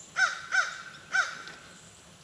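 A bird gives three short, loud, harsh calls, the first two close together and the third after a brief pause.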